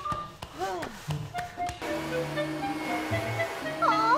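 Light comic background music with plucks and clicks, then, about two seconds in, a vacuum cleaner starts up: a steady whoosh over a low motor hum that keeps running under the music.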